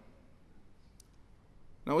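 A quiet pause of faint room tone with a single short, faint click about a second in; a man's voice starts just before the end.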